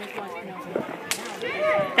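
A single sharp crack of a small firework going off about a second in, with people talking in the background.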